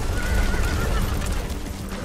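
A horse whinnies, one wavering cry lasting about a second, over a deep low rumble.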